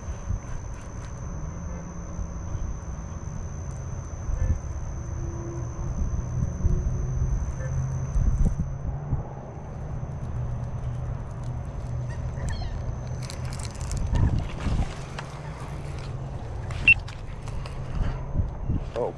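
Wind rumbling on the microphone over open-air ambience while a baitcasting reel is cranked in, with a faint steady high whine through the first half and a sharp click near the end.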